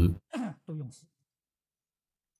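Speech: a voice finishing a phrase, then two short, soft voiced sounds in the first second, then complete silence for the rest.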